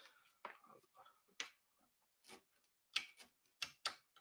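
Faint, scattered clicks and small knocks, about nine of them spread unevenly over the few seconds, from guitar cables and jack plugs being handled while the guitar is unplugged from a multi-effects pedalboard and connected straight to an audio interface.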